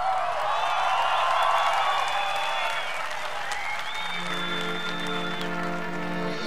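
Festival crowd cheering and applauding, with long whistles over it. About four seconds in, a brass band comes in with held, sustained chords.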